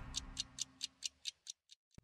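Clock-style ticking sound effect in a TV programme's closing ident: sharp, high ticks about four to five a second, growing fainter toward the end. The tail of the theme music dies away in the first second.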